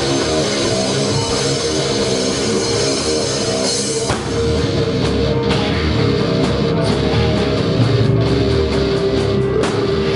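Live metal band playing: distorted electric guitars riff over bass and drum kit. About four seconds in the riff breaks and a heavier section starts, with a held guitar note and regular cymbal hits.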